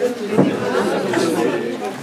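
Speech only: people talking in a room.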